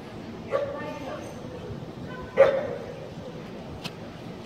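A dog barking twice, once about half a second in and more loudly about two and a half seconds in, with a sharp click near the end.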